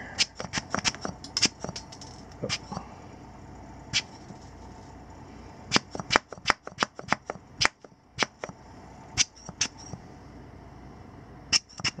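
Rubber air blower bulb squeezed again and again, giving short sharp puffs of air to blow dust out of a camera's lens housing. There are a few scattered puffs, then a fast run of them about halfway through, and a couple more near the end.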